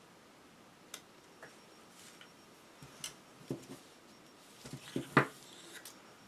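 Scattered light clicks and knocks of a carbon-fibre drone frame and its small FPV camera being handled, the loudest knock about five seconds in.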